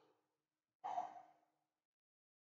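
A man sighs once, close to the microphone, about a second in: a short voiced exhale that fades within about half a second.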